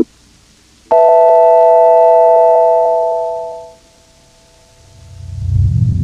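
A logo jingle's electronic chime: one chord of several steady pitches starts sharply about a second in, holds, then fades out over the next few seconds. A short beep sounds at the very start, and music swells up near the end.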